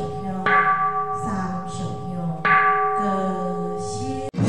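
A temple bowl bell struck twice, about two seconds apart, each stroke ringing on with a steady tone that slowly fades.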